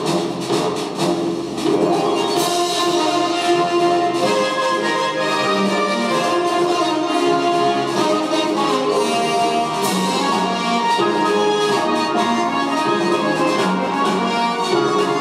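Orchestral film-score music played through ThePiHut's single-driver mini portable speaker for the Raspberry Pi. It plays steadily and sounds thin, with little bass.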